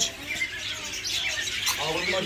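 Caged market birds, budgerigars among them, chattering in many short, high chirps and squawks. A voice speaks faintly near the end.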